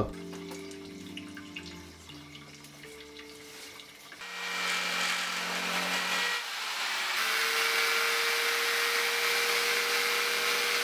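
Mains-powered Black & Decker construction drill, used in place of a dental drill, starts about four seconds in and runs continuously with a steady high whirr as it drills at a mandrill's broken teeth. Soft background music with held notes plays throughout.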